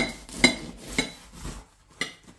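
Serrated bread knife sawing through the crust of a baked meat and potato pie, the blade clicking against the ceramic plate with each stroke, about two strokes a second, fading near the end.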